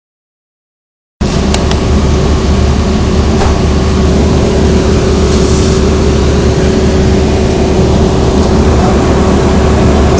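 City bus running, heard from inside the passenger cabin: a loud, steady low rumble with a constant hum over it. A few light clicks come in the first couple of seconds after the sound begins, about a second in.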